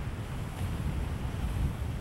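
Wind buffeting the microphone on an open seashore: a steady, fluttering low rumble with a faint hiss of the sea behind it.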